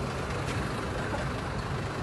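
Steady low hum of a motor vehicle engine idling close by on the street.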